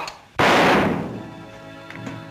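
A single gunshot about half a second in, loud and fading quickly, followed by a sustained orchestral chord from the film score.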